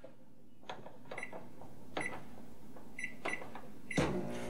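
Microwave oven keypad beeping as its buttons are pressed to key in a cook time: about four short, high beeps, each with a light click, a second or so apart.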